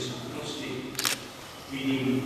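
A man speaking in short phrases, with a brief sharp click about a second in, in the pause between phrases.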